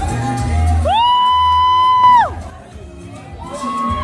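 Dance music with a thudding bass, then a single long, high-pitched scream from the audience that rises, holds for about a second and falls away. After the scream the hall goes much quieter.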